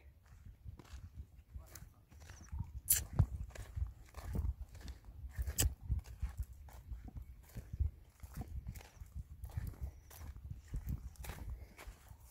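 Footsteps through dry grass, leaves and twigs, an irregular run of crunches and snaps as someone walks through scrub.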